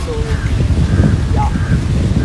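Wind rumbling and buffeting on a phone microphone outdoors, with a few short, higher calls heard faintly over it.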